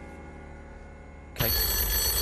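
A desk telephone's bell starts ringing abruptly about one and a half seconds in and keeps ringing. It is the banker's call coming through with an offer.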